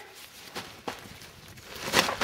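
Soft rustling and scuffing as a nylon stuff sack is handled over gravelly ground, with a couple of light clicks, growing louder near the end.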